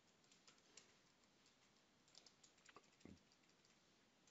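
Faint computer keyboard typing: scattered, irregular key clicks.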